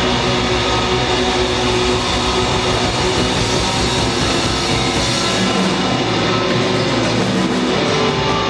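Live punk rock band playing loud: electric guitar, bass guitar and drum kit together.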